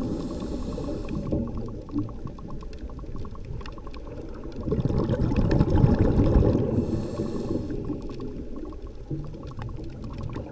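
Underwater recording: a steady, rough low rumble of water noise with bubbling, swelling about halfway through. There are two short hisses, one at the start and one about seven seconds in.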